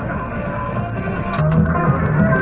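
Rock music with guitar, played back from an 8-track tape cartridge on a vintage Panasonic RS-853 8-track player. The music gets louder about one and a half seconds in. The tape is in really poor condition.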